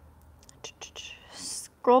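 Soft whispering with a few faint mouth clicks, then a woman's voice starts reading aloud near the end.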